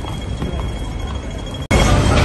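Hong Kong pedestrian crossing signal ticking rapidly for the green walk phase, over street noise. About a second and a half in, the sound cuts off suddenly to louder street noise.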